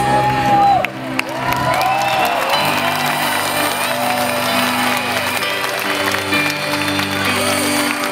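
Live band music over an outdoor stage's PA, with held chords and a gliding melody line, and the audience clapping along.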